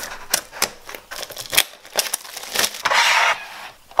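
Cardboard paint-set box and clear plastic blister tray of gouache tubes being handled: a run of clicks and taps, with a longer scraping slide about three seconds in as the tray comes out of the box.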